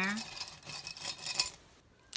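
Small charms clicking and rattling against each other and a glass jar as a hand rummages through them, a run of light clinks that dies away about a second and a half in.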